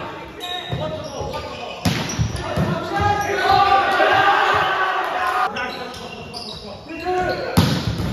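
Volleyball being struck during a rally on a hardwood gym court, with sharp hits about two seconds in and again near the end, amid players' shouted calls. The sounds echo in the large hall.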